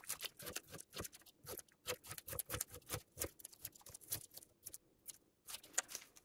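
Strips of tape being peeled off a guitar's fingerboard, a quick irregular run of small crackling tears with a short pause near the end.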